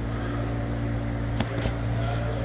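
A steady low machine hum, with one sharp click about one and a half seconds in.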